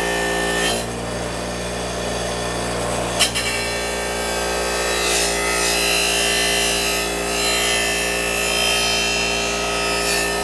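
A power tool's spinning abrasive disc rubbing along the flange of an engine oil pan, cleaning off old gasket material, with the motor running steadily. There is one sharp knock about three seconds in.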